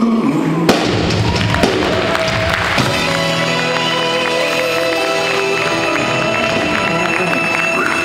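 Live band with a brass section playing the end of a song: a few sharp drum hits near the start, then a long held chord from the horns and band.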